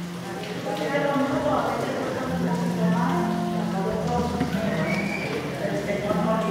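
Singing voices with musical accompaniment, held notes moving from pitch to pitch at a steady level.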